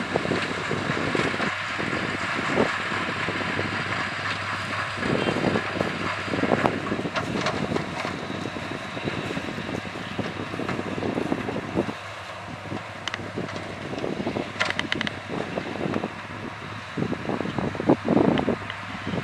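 Shaktimaan sugarcane harvester working through standing cane: a steady diesel engine drone with the rushing noise of the cutting and elevator, and a few short sharp clatters, with some wind on the microphone.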